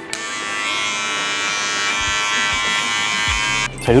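Electric hair clippers running with a steady buzz as they take the hair at the nape down close to the skin in scraping strokes for a taper fade. The buzz cuts off suddenly near the end.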